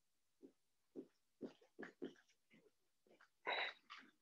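Dry-erase marker writing on a whiteboard: a string of short stroke and squeak sounds, about eight of them, the longest and loudest a little after three seconds in.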